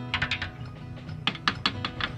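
Drumsticks tapping lightly in quick runs of soft clicks, one near the start and another from just past halfway, over a quiet stretch of the song's recorded acoustic backing.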